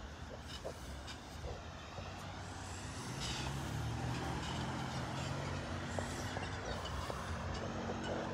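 Road traffic: a motor vehicle's engine running nearby, a steady low hum that grows louder about three seconds in and holds, over a background hiss of traffic.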